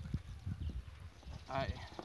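Soft low knocks of dry bread pieces being set down on a cardboard sheet, irregular and uneven, with a brief spoken word near the end.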